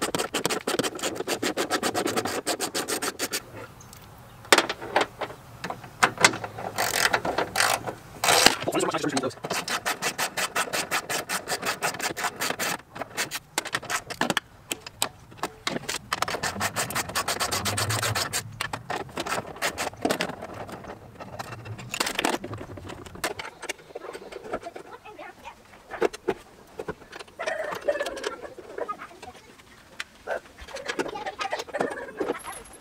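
Ratchet wrench clicking in rapid runs as the bolts of a trunk lid's key lock and latch are backed off. Tools scrape and tap on the sheet-metal lid between runs. The clicking thins out and gets quieter for the last several seconds.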